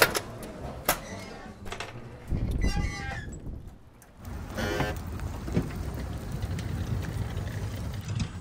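Two sharp clacks about a second apart as a glass exit door is pushed open and swings shut. Then wind rumbles on the microphone outdoors, dipping briefly and then running on steadily.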